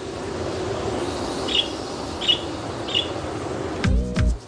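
Sound-effect soundtrack: a steady low rumbling noise that fades in, with three short high chirps about two-thirds of a second apart.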